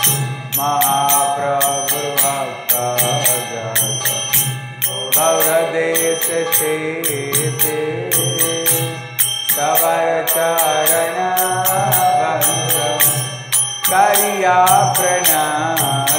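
Devotional kirtan: voices sing a chanted phrase, a new line starting about every four and a half seconds. Small hand cymbals keep a fast, steady metallic beat under the singing, over a constant low drone.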